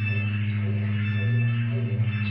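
Improvised experimental rock played live by a band, a steady low drone held under sustained higher tones.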